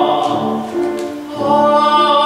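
A man singing in classical operatic style with grand piano accompaniment. The voice dips briefly past the middle, then takes up a new held note.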